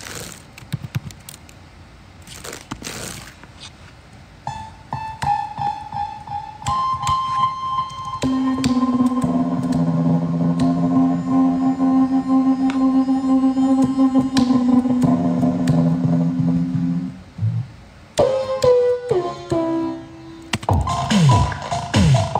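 Synthesizer played from a keyboard: held notes build into a sustained chord over low bass notes, which stops suddenly, then sliding and falling pitch-bent tones near the end.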